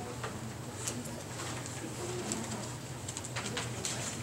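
Quiet room sound in a hall, with scattered soft clicks and rustles and a few faint, short, low cooing tones.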